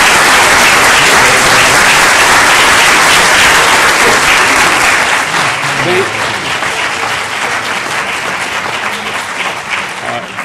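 An audience applauding, loudest in the first few seconds and then slowly dying away.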